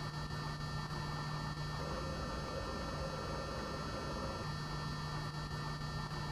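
Steady low electrical hum over a faint even hiss: room tone, with no speech.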